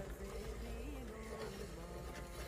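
A low, steady mechanical hum, like a motor running.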